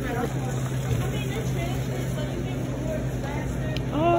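A steady low machine hum, with faint voices in the background.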